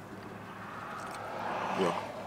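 Rush of a vehicle passing by, heard from inside a car, building steadily over about a second and a half; a man's voice starts briefly near the end.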